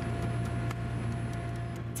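A small hammer tapping and chipping at a block of clear glacier ice, a few light ticks, over the steady hum of the amphibious tour boat's engine.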